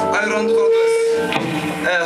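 Irish punk band with accordion playing live in a small club room, a singer shouting "Let's…" over it with one note held for about a second.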